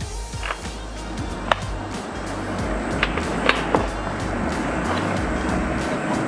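Cardboard lid of a MacBook Pro box being worked up off its base: a continuous rubbing of cardboard sliding on cardboard with a few light clicks and taps, over background music.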